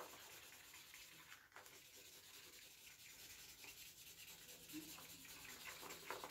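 Faint scratchy scribbling of brown colouring on paper as a leaf shape is coloured in, the strokes rubbing back and forth unevenly.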